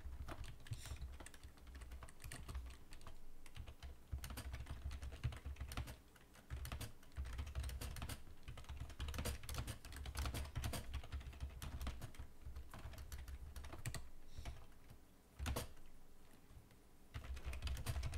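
Typing on a computer keyboard: quick runs of keystroke clicks with a few short pauses, over a low steady hum.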